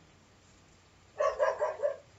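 A dog barking in the background: a quick run of about four barks starting a little over a second in.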